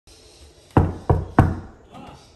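Three quick knocks, about a third of a second apart.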